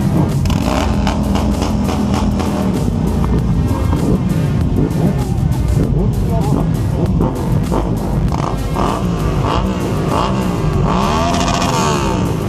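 Music playing over a crowd of motorcycle engines running, with repeated revs rising and falling in pitch in the last few seconds.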